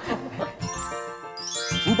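Light background music with a twinkling chime sound effect. About a second and a half in, a quick upward run of bell-like tones rises into the high register.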